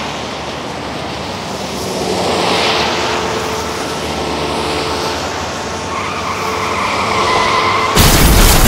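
Road traffic noise: a steady rush of passing vehicles that swells and eases, with a held tone joining for the last two seconds before it cuts off suddenly.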